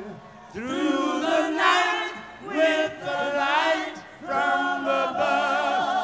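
A group of voices singing a cappella in harmony, holding long notes with vibrato in phrases of one to two seconds, with brief breaks between them.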